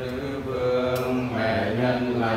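A man's voice chanting a prayer in long held notes, a sung blessing. A single light click about a second in.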